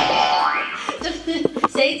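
Small group laughing over added background music, with a comic sound effect that slides up in pitch during the first second and a few short clicks about a second and a half in.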